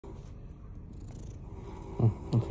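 Domestic cat purring steadily, close to the microphone, while its head is being massaged.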